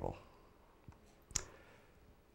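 Quiet room tone with one short, sharp click a little past halfway and a fainter tick shortly before it.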